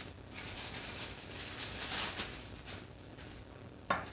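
Plastic bread bag crinkling and rustling as a loaf of white bread is worked out of it, loudest about two seconds in. A brief pitched squeak near the end.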